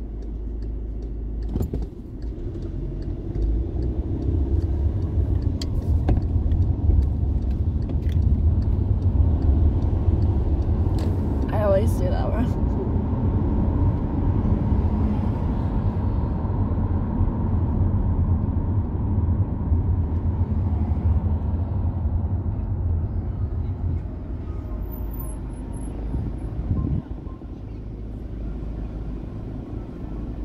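Low engine and road rumble heard inside a car's cabin. It builds as the car pulls away from a stop, stays steady while it drives, and falls away near the end as the car slows to a stop.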